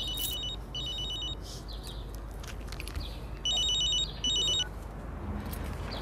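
Mobile phone ringing: an electronic ring of short pulsed beeps in pairs, two rings about three seconds apart, the second louder.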